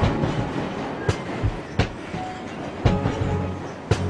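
Background music with a few sharp, irregularly spaced clunks, mixed with a London Underground train running over track, its wheels clattering over rail joints.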